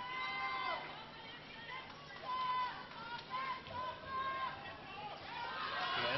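Athletic shoes squeaking on an indoor handball court floor: several short, high-pitched squeals at irregular moments, heard from a TV broadcast played back through a speaker.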